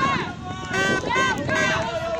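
Several people shouting and yelling at once, their voices overlapping, with one long drawn-out shout starting near the end; typical of spectators and teammates urging on relay runners.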